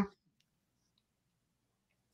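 The end of a man's "mm-hmm", then near silence with a few faint clicks.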